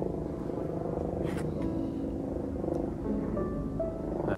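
Background music with sustained, held notes.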